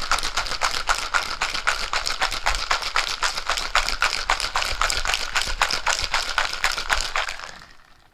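Ice rattling hard inside a cocktail shaker shaken by hand, a quick, even rhythm of strokes, chilling a Lemon Drop mix of vodka, lemon juice, simple syrup and Cointreau. The shaking dies away near the end.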